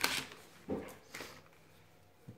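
Small plastic cards and packaging handled in the hands: a sharp rustle at the start, a shorter one about two-thirds of a second in and a faint one a second in, then quiet.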